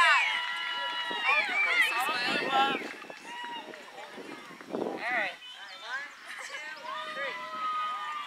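A group of voices, many high-pitched, talking and calling out over one another; busiest and loudest in the first three seconds, thinner after.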